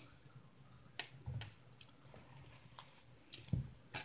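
Small miniature toy pieces being handled and fitted together: scattered light clicks and taps, with a couple of soft knocks against the table.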